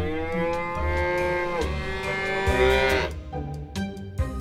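Cow mooing: two long moos back to back, the first ending about one and a half seconds in and the second about three seconds in, over background music.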